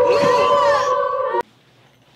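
Horror-film soundtrack excerpt: steady eerie tones with higher wailing sounds sliding up and down over them. It cuts off abruptly about one and a half seconds in.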